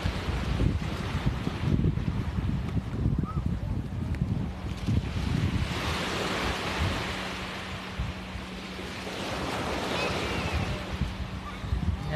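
Small surf breaking and washing up the sand, with wind buffeting the microphone; the wind rumble is strongest in the first half, and the hiss of a wave's wash swells about halfway through.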